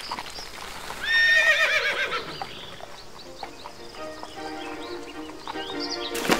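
A horse whinnies about a second in, one wavering call lasting about a second. Then orchestral music comes in softly and builds.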